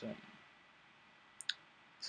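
Quiet room tone, broken about one and a half seconds in by two short clicks in quick succession, the second louder.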